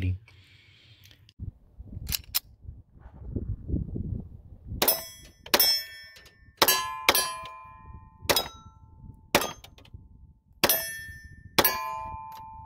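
A Colt 1903 Pocket Hammerless .32 ACP pistol fired eight times at an uneven pace, starting about five seconds in. Most shots are followed by the ringing clang of a struck steel target.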